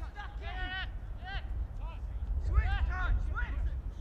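Footballers shouting short calls to each other across the pitch during play, several voices in quick succession, loudest near the end, over a steady low rumble.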